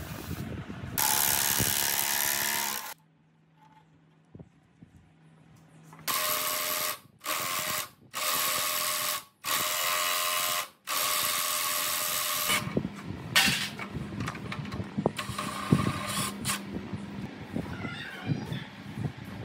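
Cordless impact wrench hammering at rusted nuts on an old tiller frame in repeated bursts of a second or two, loosening them for disassembly. Clicks and clanks of metal being handled come between the bursts and near the end.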